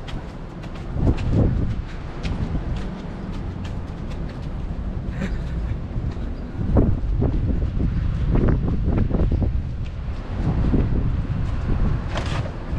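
Wind buffeting the microphone: an uneven low rumble that swells and eases. There are scattered light scuffs of footsteps on pavement.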